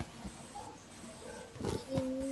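Faint hiss and background noise from an open microphone on a video call, with a short noisy burst near the end, just before a child's voice begins.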